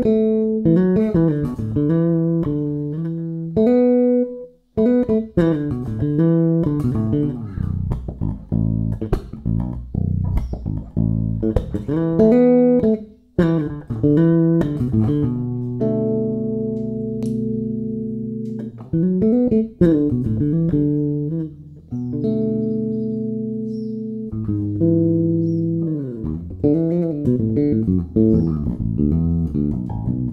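Five-string Warwick RockBass Corvette electric bass, on well-worn strings, played fingerstyle through its TB Tech Delta active preamp with the high mids boosted to full and bass and treble at half. It plays a run of plucked notes with a few longer held notes in the middle, and two brief breaks about four and a half and thirteen seconds in.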